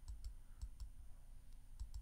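Faint, uneven clicks of a computer being operated, about seven over two seconds, as a verse is looked up on screen.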